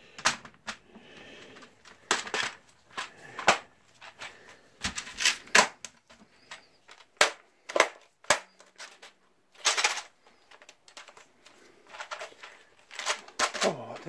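Irregular sharp plastic clicks and knocks of a Compaq computer keyboard's casing and keys being handled and fitted back together.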